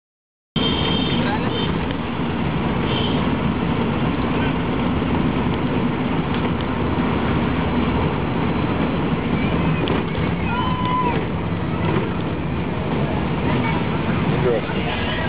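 Steady engine and road noise inside a car driving slowly through a busy town street, starting half a second in, with indistinct voices and a brief higher tone about ten and a half seconds in.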